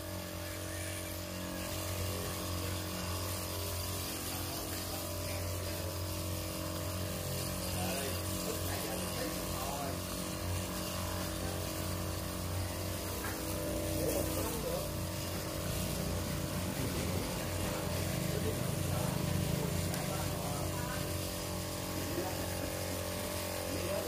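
Motorized disinfectant sprayer running steadily, its pump motor holding one even hum under the hiss of spray from the wand as the carts are wetted down.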